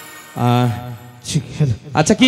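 A man's voice over the stage PA: one drawn-out held vocal call about half a second in, then a few short vocal sounds.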